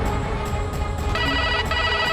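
Background music, then an electronic telephone ring that starts about halfway through in short repeated bursts.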